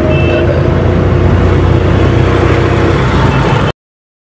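Car on the move, heard from inside the cabin: steady engine and road rumble with a low drone. It cuts off abruptly just before the end.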